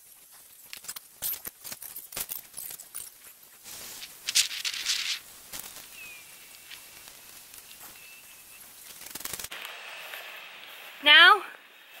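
Black plastic sheeting crackling and rustling as it is spread and shifted over the bed, with a run of sharp, irregular crinkles in the first few seconds and a louder rustle about four seconds in. A short spoken phrase comes near the end.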